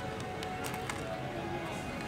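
A few short, crisp crunches near the start as a crunchy cornflake-coated choux pastry (Zakuzaku croquant chou) is bitten and chewed, over quiet background music.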